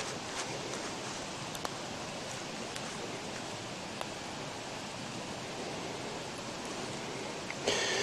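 Campfire burning under a hanging kettle: a steady hiss with a few faint, sparse pops. A brief louder rustle or knock comes near the end.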